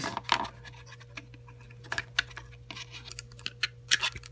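Small hard-plastic clicks and scrapes, irregular, as a Figma action figure and its clear plastic stand arm are handled and the stand's joint is pushed into the figure's back, over a steady low hum.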